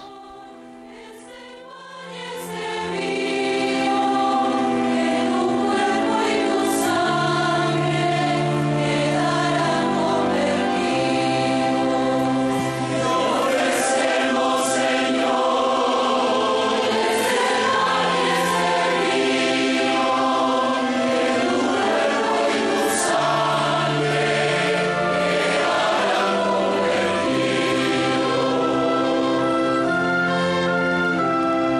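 Large choir singing the offertory hymn with a string orchestra of violins and cellos accompanying. It opens softly and swells to full strength within the first few seconds, then carries on steadily.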